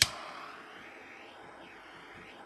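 Small handheld heat gun switched on with a click, then blowing hot air steadily to warm a thermistor.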